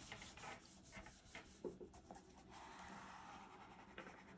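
Faint rubbing of hands pressing and smoothing glued paper flat onto a hardbound planner's cover.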